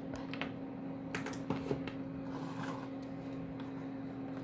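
A steady low electrical hum with a few faint, light clicks and taps, mostly in the first couple of seconds.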